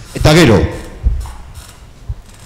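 A man speaking one short word, then a pause of about a second with only low room noise and a faint low rumble.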